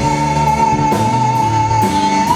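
Live rock band playing, with electric guitar prominent over bass and drums, and one high note held steady over the band.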